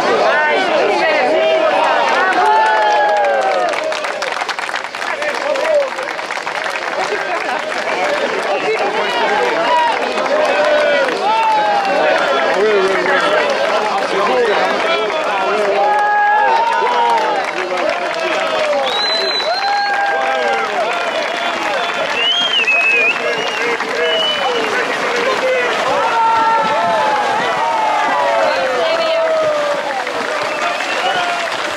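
A crowd of spectators calling and shouting over one another, many voices overlapping with no clear words.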